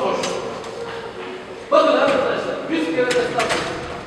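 People talking in a crowded room, with a couple of short bursts of voice and a few sharp clicks or knocks about three seconds in.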